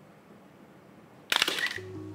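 Camera shutter firing in a quick burst of several sharp clicks about a second and a half in. Low music notes begin just after.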